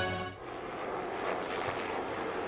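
The tail of a news theme ends in the first half second, then a low-flying military helicopter overhead gives a steady rumble.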